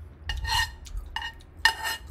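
Utensil clinking and scraping against a dish three times, each stroke ringing briefly.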